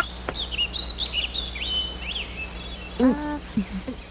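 Birds chirping in a forest ambience track: a string of short, high chirps and whistles over the first three seconds, then a brief vocal sound from a character about three seconds in.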